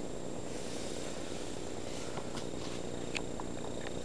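A steady low hum with a few faint clicks scattered through it.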